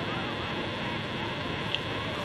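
Steady background noise, an even hiss with no speech.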